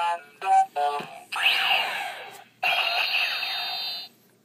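Kamen Rider Fourze DX Fourze Driver toy belt playing its electronic sound effects through its small speaker: three quick beeps, then two stretches of synthesized sweeping effects and music that cut off suddenly at the end.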